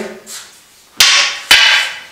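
Two sharp clacks of a wooden walking cane striking a partner's held-out wooden cane, about half a second apart: a double tap.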